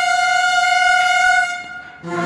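A brass instrument of a military band holding a single high, steady note, which fades out over the last half second.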